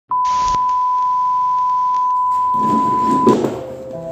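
Television test-card tone: one steady, loud, high-pitched beep over a hiss of static, cutting off with a click a little over three seconds in.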